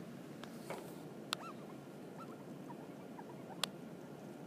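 Quiet room tone with two sharp taps, about a second in and near the end, and a few faint short squeaks: a stylus writing on a tablet screen.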